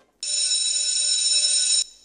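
A high-pitched ringing bell tone, held steady for about a second and a half and then cut off abruptly.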